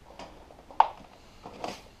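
One sharp click a little under a second in, with a fainter tick before it and a few soft knocks near the end: a cable connector being handled and unplugged at the back of a Xerox J75 printer.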